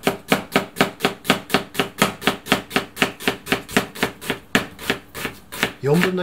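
Kitchen knife thinly slicing a halved onion on a cutting board, each stroke knocking the board in a steady rhythm of about four to five cuts a second, with a brief pause near the end.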